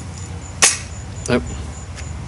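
A single sharp mechanical click from a .177 break-barrel spring-piston air rifle about half a second in.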